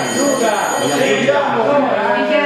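Overlapping chatter of several people talking at once in a large hall, with no single speaker standing out.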